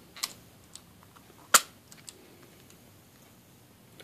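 A few light clicks, then one sharp plastic snap about a second and a half in, from handling a plastic salsa tub and its lid.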